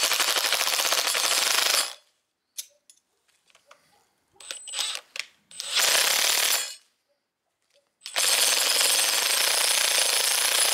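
Cordless power tool spinning a blind rivet adapter in three bursts, a dense rapid rattle, as it pulls blind rivets through sheet metal; light metallic clicks between bursts.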